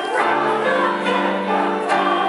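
Singing of an old music-hall song with piano accompaniment, with long held notes.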